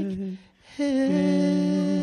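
A group of voices singing a held chord on the final phrase of a gospel song. The chord breaks off for a moment about half a second in, then the voices come back on a new long held chord.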